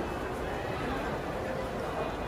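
Indistinct chatter of nearby people over a steady background hum.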